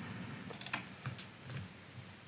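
A few scattered, faint computer keyboard keystrokes.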